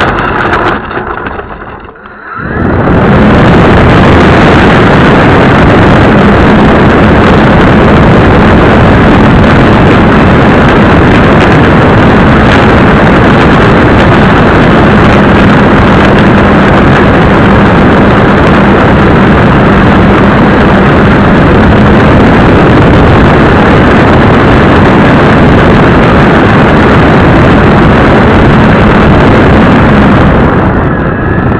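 Model airplane's propeller motor run up to high power right beside the onboard camera. It comes in about two seconds in, after a brief dip, and then holds as a steady, loud, overloaded noise with a faint low hum.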